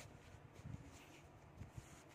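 Near silence, with a few faint soft bumps of hands handling a crocheted yarn cover.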